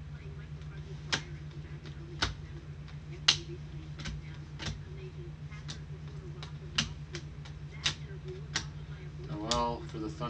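Trading cards flipped one at a time through gloved hands, each card giving a sharp click against the stack, about one a second and quicker later on, over a steady low hum.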